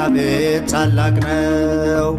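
Sung Ethiopian Orthodox hymn (mezmur) with instrumental accompaniment: a voice holding long notes over a low bass line.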